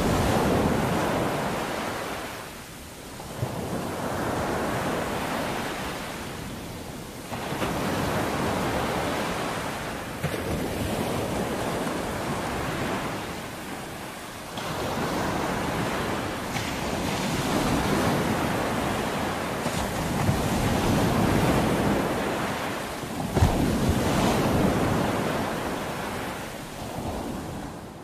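Ocean surf breaking and washing over rocks, a steady rush of white noise that swells and ebbs with each wave every few seconds.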